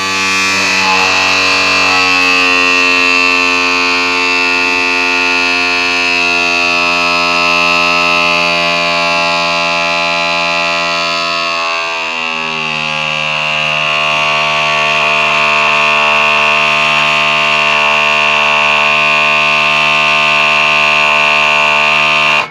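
Electric-hydraulic cab-tilt pump of a Mitsubishi Fuso Super Great truck running with the up switch held, raising the cab. It is a loud, steady whine with a high ringing tone, drops in pitch about halfway through, and cuts off suddenly at the end.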